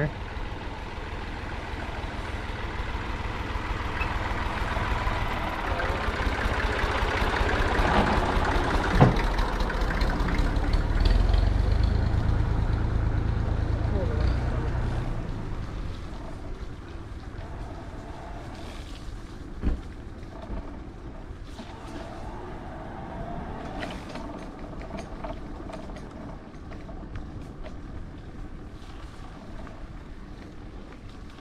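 Engine of a heavy work vehicle running close by, building in loudness over the first fifteen seconds with a single sharp knock partway through, then falling away to a quieter steady background of ride noise.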